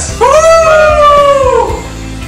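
One high voice giving a long held cheer, sliding up at the start and then slowly falling over about a second and a half.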